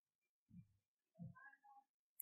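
Near silence: faint room tone, with a soft low thump about half a second in and a faint, short pitched sound rising in pitch about a second in.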